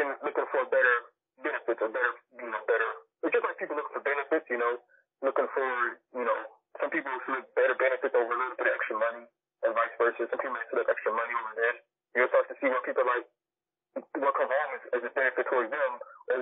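Speech only: a man talking with short pauses, his voice thin and phone-like.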